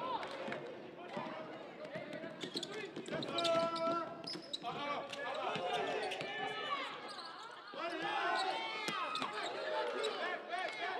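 Basketball bouncing on a hardwood gym floor, with sneakers squeaking in quick, high chirps as players run and cut, over the voices of players and the crowd.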